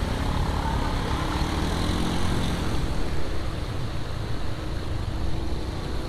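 Motorbike traffic on a wet, flooded road: a steady engine drone with the hiss of tyres through water.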